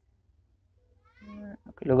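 Near silence, then about a second in a short, pitched, meow-like call with gliding pitch lasting under half a second, just before a man's speech resumes near the end.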